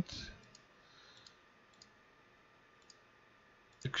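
A few faint, isolated computer mouse clicks, spaced out over several seconds, as options are picked in a program.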